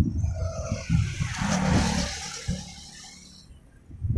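A vehicle passing close by: its tyre and engine noise swells to a peak about halfway through and fades away. Wind buffets the microphone with irregular low rumbles.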